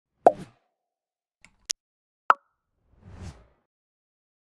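Pop sound effects for an animated logo: a loud pop near the start, a quick high click a little after one and a half seconds, another sharp pop just after two seconds, then a softer, lower and longer sound about three seconds in.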